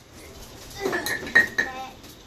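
A few clinks and knocks of hard objects with a short ringing tone, about a second in.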